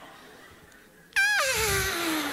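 A man's voice in a high falsetto that wavers briefly, then slides steadily down in pitch for about a second and a half. It mimics the sigh a woman gives at the end of a laugh. It starts suddenly a little past halfway in, after a quiet pause.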